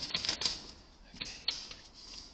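Paper rustling and clicking against a metal mailbox door as a folded leaflet is pushed through the gap, busiest in the first half second, with two sharp clicks a little over a second in.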